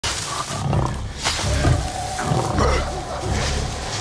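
Ape vocalizations in a film sound mix, with rustling and a heavy low thud repeating about every three-quarters of a second.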